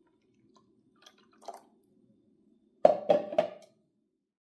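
Juice poured from a plastic juicer pitcher into a bowl: a small liquid splash about a second and a half in. Near the end come three quick, hard knocks, about three a second, as the pitcher is handled.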